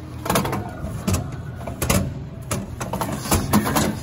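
White plastic tray being handled and slid out of a compartment at the base of an arcade cabinet, giving irregular plastic knocks and rattles, the loudest about three and a half seconds in.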